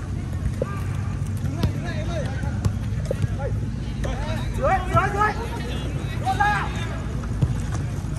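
Voices shouting and calling across a football pitch during a match, loudest around the middle, over a steady low rumble, with a few sharp knocks.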